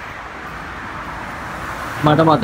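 Steady road traffic noise, an even hum of vehicles that grows slightly louder toward the end.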